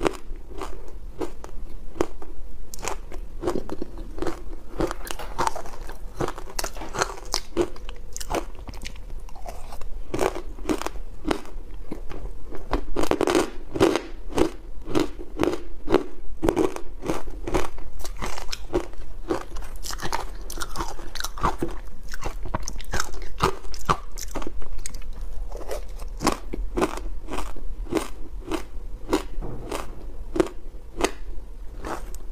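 Ice coated in dry matcha powder being bitten and chewed close to lapel microphones: a steady run of sharp, brittle crunches, about two or three a second.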